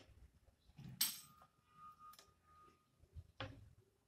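Ballpoint pen drawing a circle on paper, faint, with a few short clicks and knocks. The loudest comes about a second in and is followed by a faint ringing tone lasting about two seconds.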